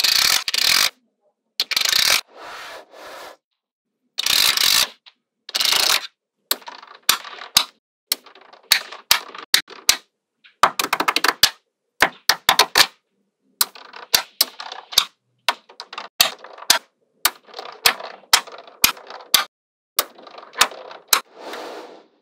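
Small neodymium magnet balls rattling and clicking as strips and sheets of them are peeled off a mat and snapped back into place. Several loud rattling bursts come in the first few seconds, then sharp single clicks and short rattles one to three a second, with moments of dead silence between them.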